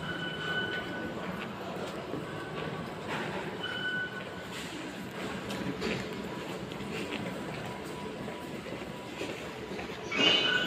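Steady rumbling din of a metro station concourse, with three short electronic beeps in the first four seconds from the fare-gate card readers.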